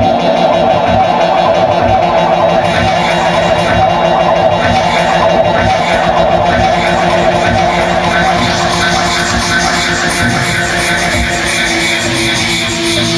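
Loud club dance music played by a DJ through the venue's sound system, with a steady beat running throughout.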